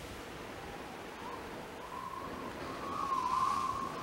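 A soft, steady soundtrack hiss with a thin, slightly wavering high tone that fades in about a second in and grows louder toward the end.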